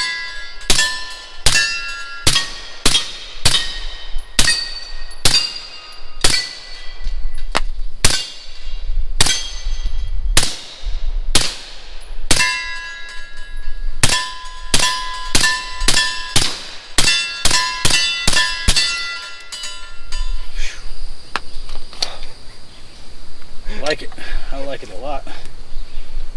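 Suppressed AR-pattern rifle in .300 Blackout fired in a steady string of about thirty shots, roughly two a second, each followed by the ringing clang of a struck steel target. The firing runs to about twenty seconds in and then stops. This is a full magazine emptied from a hex mag without a jam.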